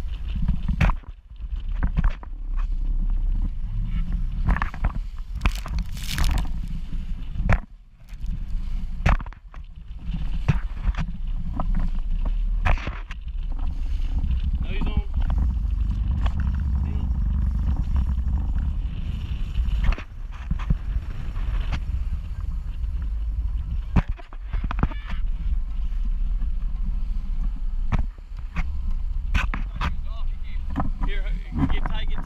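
Wind buffeting the camera microphone as a small skiff runs through choppy water, with water slapping and splashing against the hull and frequent sharp knocks.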